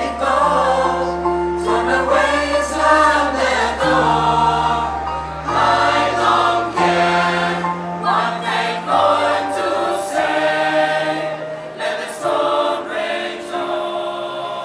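Mixed choir singing with keyboard accompaniment, over long held low notes that change every second or two.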